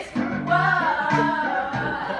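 A group of women singing a song together.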